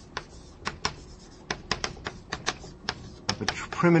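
Chalk writing on a blackboard: an irregular run of sharp taps as the strokes are made. A man's voice starts a word near the end.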